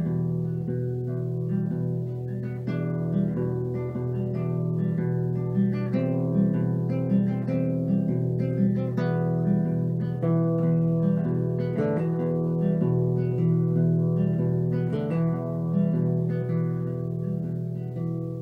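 Nylon-string classical guitar played fingerstyle: a steady, unbroken picked pattern of treble notes over repeated low bass notes.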